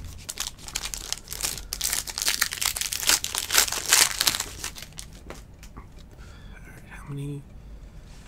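Foil wrapper of a trading-card pack crinkling and tearing as it is ripped open by hand, a dense crackle for about five seconds that then dies down.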